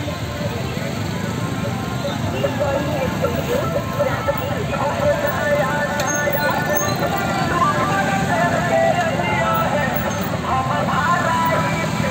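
Many motorcycle engines, with auto-rickshaws among them, running as a procession rides past, with voices and music over the engines.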